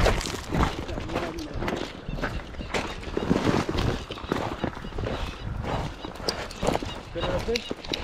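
Footsteps crunching on loose river stones, an irregular run of crunches and knocks.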